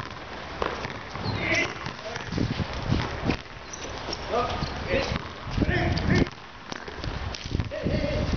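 Voices calling out in short, scattered shouts, with a few sharp knocks in between, over a steady low background rumble.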